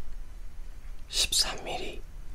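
A person whispering close to the microphone, starting about a second in.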